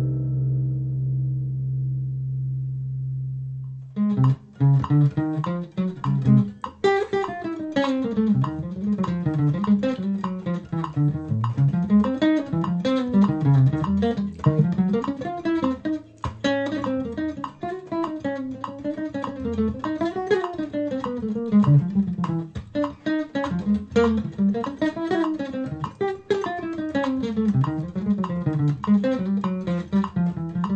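A nylon-string classical guitar's final chord rings and fades over the first four seconds, then an archtop jazz guitar comes in with fast single-note lines that climb and fall in quick runs.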